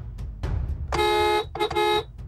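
Car horn honking: one long blast about a second in, then a short double toot near the end, over background music with a low, regular drum beat.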